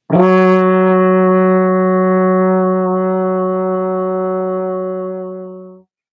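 Trombone playing one long tone, F sharp in fifth position. It is tongued at the start, held steady for nearly six seconds, and fades over its last second before it stops.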